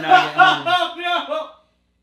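A man's voice, loud and speaking or exclaiming, that cuts off about one and a half seconds in, followed by dead silence.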